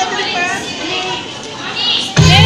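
Children's voices chattering and calling out, several at once, with no music.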